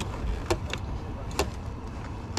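BMW M1000RR's inline-four engine idling with a steady low rumble, with a few sharp clicks about half a second and just under a second and a half in.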